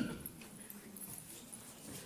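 A pause between sentences of a talk: faint room noise of the hall, with no clear sound event.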